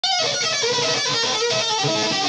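Gibson Les Paul electric guitar played through an amplifier: a fast lead run of single notes changing several times a second.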